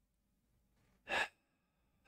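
A man sighs once into a close microphone: one short breath about a second in.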